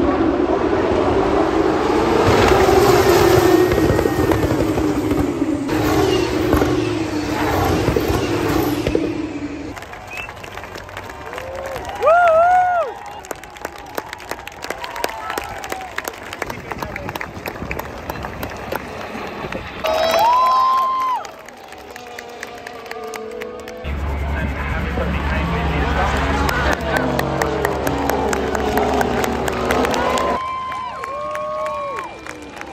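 Trackside motor-race sound: crowd voices and cheering with loudspeaker sound and racing cars running on the circuit, in several short cuts that change abruptly a few times.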